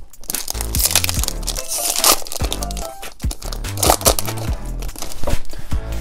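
A foil booster-pack wrapper crinkling and tearing open in the hands, loudest in the first half, over background music with a steady bass line.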